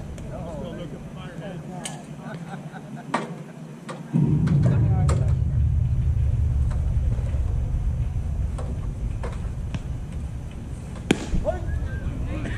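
Distant voices across the field with a few sharp knocks. About four seconds in, a low rumble sets in suddenly and stays: wind buffeting the microphone.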